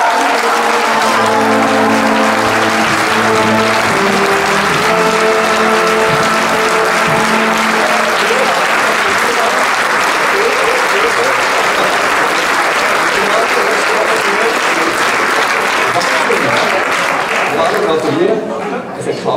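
Crowd applauding and cheering. A melody of held notes plays over it for the first eight seconds or so, then the applause goes on alone.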